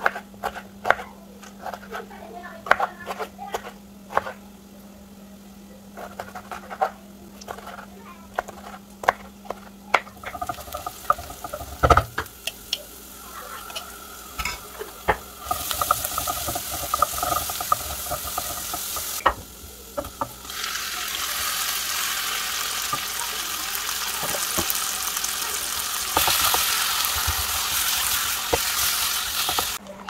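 A knife slicing a tomato on a wooden cutting board, a run of sharp taps for about the first ten seconds. Then a wooden spoon stirring garlic seasoning in a hot pot, with garlic frying in oil: a steady sizzle that grows loudest near the end.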